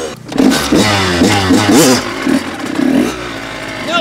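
Kawasaki KX100 two-stroke dirt bike engine revving, with people laughing over it.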